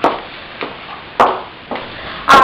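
Footsteps on a tiled floor: four sharp steps at an even walking pace, about half a second apart.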